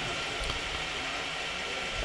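Steady background hiss from the public-address sound system and the room, with no distinct events.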